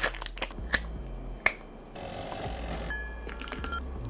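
Thin plastic wrap crinkling and crackling as it is peeled off individually packed rice cakes (kiri mochi), with a few sharp snaps in the first two seconds. After that comes a faint steady hiss, with a few thin high tones near the end.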